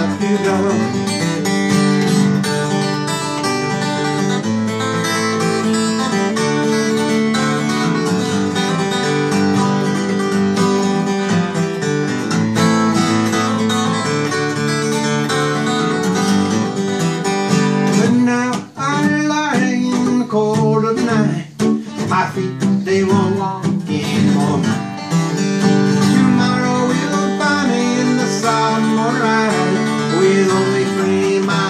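Acoustic guitar playing an instrumental break between sung verses, picked chords ringing steadily, with a busier stretch of quick notes about two-thirds of the way through.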